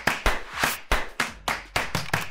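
A quick, slightly uneven run of sharp taps, about six a second, like a typing or clapping sound effect.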